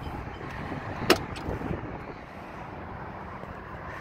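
A 1992 Ford Mustang GT's door latch clicks once, sharply, about a second in as the door is opened, with a fainter click just after, over a steady low background rumble.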